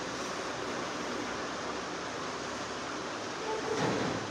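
Steady, even hiss of background room noise, with a faint voice starting just before the end.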